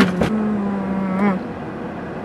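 A woman's closed-mouth 'mm-hmm' hum of enjoyment, held on one steady pitch for over a second and rising at the end. A couple of sharp clicks come right at the start.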